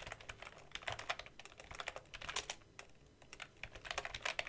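Typing on a computer keyboard: irregular runs of quick key clicks, with a brief pause about two-thirds of the way through.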